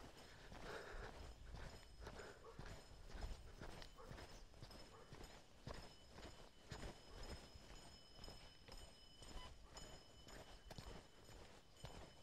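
Faint footsteps on a gravel track, a steady walking pace of roughly one to two steps a second.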